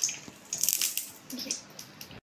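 Lumps of solid ghee being put by hand into a hot kadhai: a few brief noises, the loudest about half a second to a second in.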